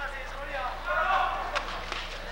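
Men's voices, with a steady low hum beneath and a brief sharp click about one and a half seconds in.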